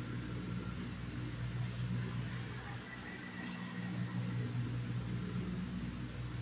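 Steady low electrical hum with a thin, high-pitched whine above it, slowly getting a little louder.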